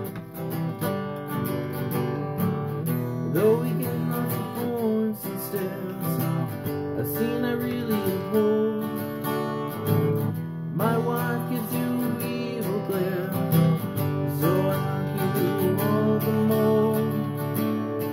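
Acoustic guitar strummed in a steady accompaniment, with a man singing along in stretches.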